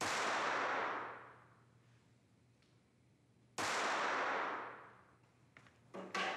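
Two pistol shots about three and a half seconds apart in an indoor shooting range, each ringing out in a long echo that dies away over a second and a half.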